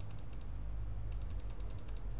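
Computer mouse clicking rapidly while scrolling a long dropdown list: two quick runs of about ten ticks a second, with a short pause between them, over a low steady hum.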